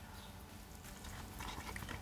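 Faint bite and chewing of a breaded, sauced fried boneless chicken piece dipped in ranch, with soft irregular mouth clicks in the second half.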